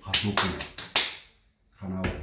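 A quick run of about six sharp finger snaps in the first second, mixed with a man's voice, then a short pause.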